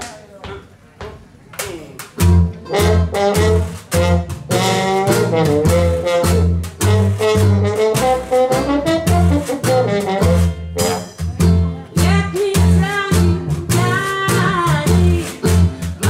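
New Orleans-style jazz band playing a swing blues: slide trombone carrying the melody over a walking double bass, with banjo and washboard keeping the beat. After a couple of seconds of light taps, the full band comes in about two seconds in.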